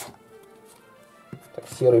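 Quiet background music, with one light tap of a playing card about a second in.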